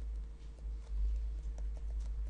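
Stylus tapping and scratching on a tablet screen during handwriting, a string of light irregular ticks over a steady low hum.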